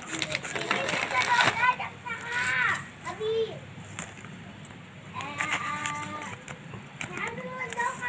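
Indistinct voices talking quietly, in spells with a short lull in the middle.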